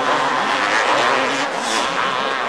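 Two-stroke motocross bike engines revving, their pitch rising and falling quickly as the throttle opens and closes.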